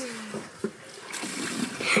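Fuel trickling from a fuel can's spout into a ride-on mower's plastic fuel tank. The pouring noise grows louder from about a second in.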